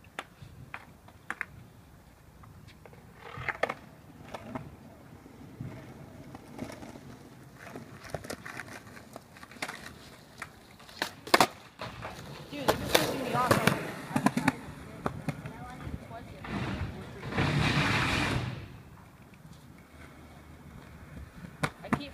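Skateboard on asphalt: scattered clacks, then one loud sharp tail pop a little past halfway followed by the board clattering and its wheels rolling, and a longer rolling rush near the end.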